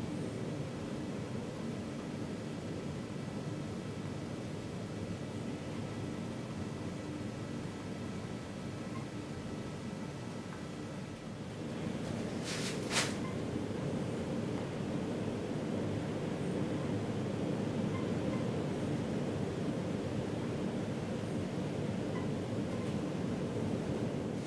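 Steady low background noise that grows a little louder after about twelve seconds, with one sharp click about thirteen seconds in.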